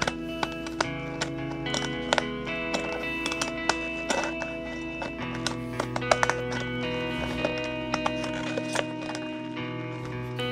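Background music with sustained chords, over a run of short sharp clicks from Fiskars scissors snipping the edge of a glossy brochure-paper bag.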